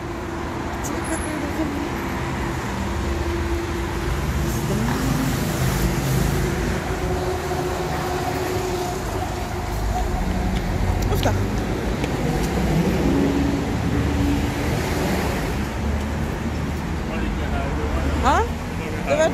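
Street traffic noise: cars and a trolleybus passing along the road, swelling and easing, with faint voices of passers-by.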